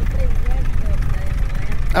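Steady wind rumble over the microphone in flight, with a paramotor's engine running at low throttle underneath.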